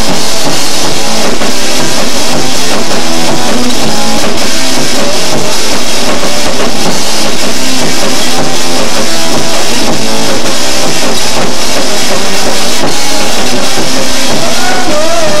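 Live rock band playing drum kit and guitar, very loud and steady throughout.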